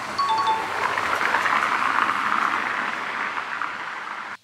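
Street traffic: a car driving along the street, its tyre and engine noise swelling and then easing off. A short two-note falling beep sounds right at the start.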